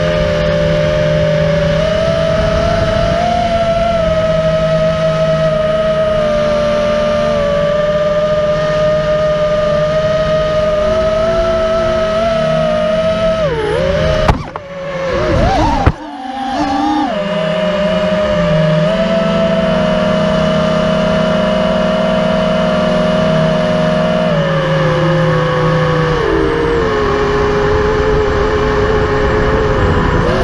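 FPV quadcopter's brushless motors whining steadily as heard from its onboard camera, the pitch shifting up and down with the throttle. About halfway through the whine swoops down and breaks off with two sharp knocks, then the motors spin back up and carry on.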